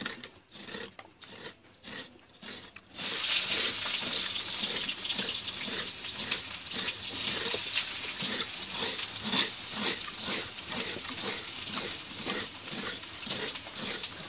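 A blade scraping coconut flesh out of the shell half, in rhythmic strokes of about two or three a second. About three seconds in, a steady loud hiss starts suddenly and covers the rest, with the scraping still going on underneath.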